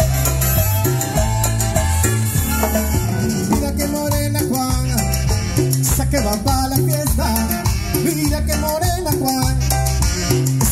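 A live Latin dance band with brass and hand percussion playing an up-tempo tropical number, with a steady, repeating bass pattern under it.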